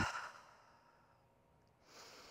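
Soft human breathing: an exhale trails off in the first half second, then near silence, then a faint breath in begins near the end.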